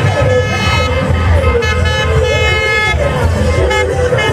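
A vehicle horn held for about two and a half seconds as caravan pickup trucks roll slowly past, over engine rumble and an amplified voice.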